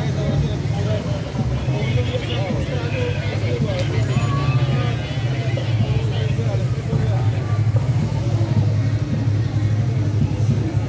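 Crowd chatter and voices along a street over a steady low engine rumble from slow-moving police motorcycles and a police SUV.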